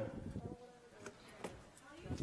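A faint, distant voice speaking, off the microphone: an audience member beginning to ask a question.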